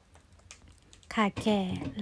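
About a second of faint light clicks from galangal roots being handled, then a woman speaks a short phrase in Thai.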